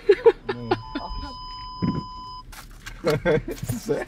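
An Audi's collision-avoidance warning sounds a steady beep tone for about two seconds, then cuts off.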